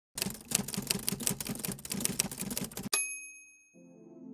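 Typewriter sound effect: rapid keystrokes for nearly three seconds, then a bell ding that rings out and fades. Low sustained music tones come in near the end.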